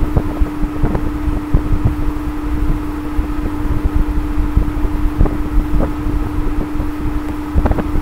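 Steady background rumble with a constant humming tone, like a fan or air moving on the microphone, dotted with irregular soft knocks.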